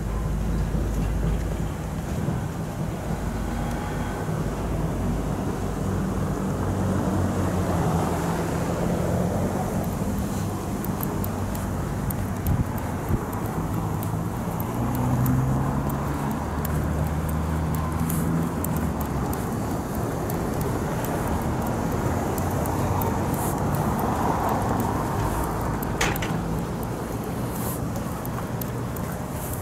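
Street traffic and wind on the microphone: a steady rumble of car engines and tyres on a snowy road. From about ten seconds in come short crunches, as of footsteps on packed snow.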